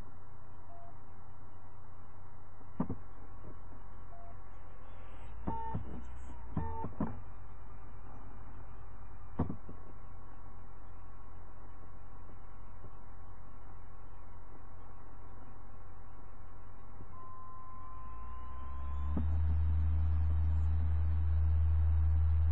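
Computer DVD drive reading a newly inserted disc: a few faint clicks in the first ten seconds, then the disc spins up with a rising whine about eighteen seconds in that levels off into a steady high whine over a low hum.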